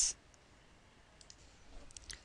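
A few faint computer mouse clicks over quiet room tone, starting a little over a second in.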